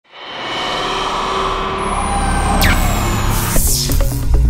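Intro sound effect: a dense rushing swell with a slowly falling high whistle and a quick falling sweep, building to a whoosh at the end just as electronic intro music with a heavy bass comes in.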